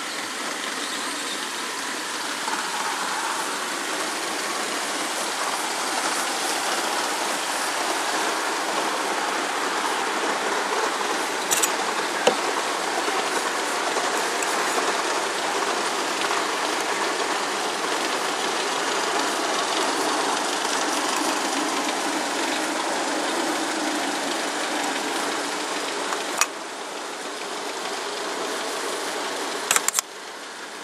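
Tiny air-cooled single-cylinder gasoline engine of a model locomotive running steadily at speed, with a couple of sharp clicks near the middle. Near the end the sound drops suddenly to a quieter level.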